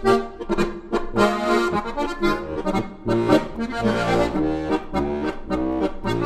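Background music: an accordion playing a traditional-style tune with a regular beat.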